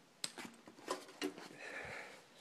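Faint clicks and knocks of hands unhooking and handling an amplifier, a few separate taps in the first half, then a soft breathy rush near the end.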